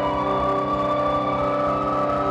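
Generative electronic music from patched hardware synthesizers: layered sustained synth tones over a rapidly fluttering low bass. One of the upper tones steps up in pitch about one and a half seconds in.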